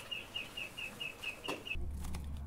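A bird calling in a rapid run of short, high chirps, about five a second, with one sharp click about a second and a half in. The chirping cuts off suddenly near the end, giving way to a low steady hum.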